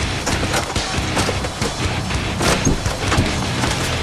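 Hailstones pelting down, a dense, irregular clatter of hard little impacts.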